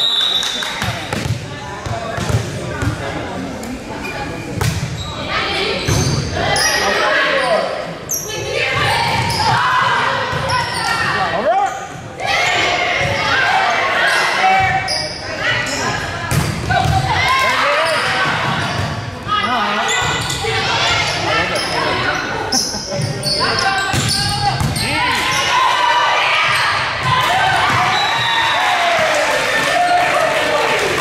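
Volleyball rally in a gym: the ball is struck and bounces on the hardwood floor again and again, with sharp knocks. Players' and spectators' voices call out and cheer throughout, echoing in the large hall.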